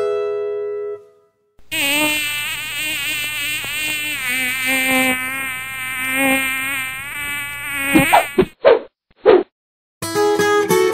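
A flying insect buzzing, its pitch wavering up and down for several seconds, then three short buzzes near the end.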